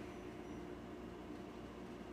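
Steady low background hiss with a faint electrical hum: room tone.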